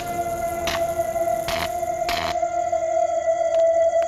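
Suspense background score: a long held drone tone with a few sharp hits through it, and a quicker run of ticking hits near the end.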